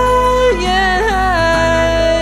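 Mellow acoustic indie song: a singing voice holds long notes and slides between them, with guitar beneath.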